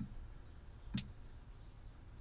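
A single sharp computer-mouse click about halfway through, with a softer click at the very start, over faint background hiss.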